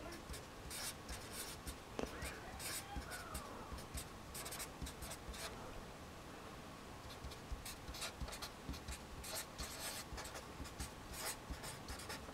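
Felt-tip marker writing on paper: faint, quick scratchy strokes as letters and symbols are written out.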